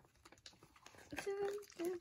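Faint ticks of paper and clear tape being handled, then a short wordless voice sound in the second half.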